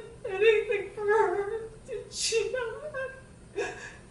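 A woman sobbing, with high-pitched whimpering cries in short broken bursts and a sharp, breathy gasp about two seconds in.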